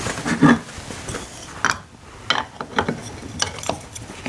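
Machined aluminium engine case parts being handled and fitted together on a workbench: a series of irregular metal clicks and knocks, the loudest about half a second in.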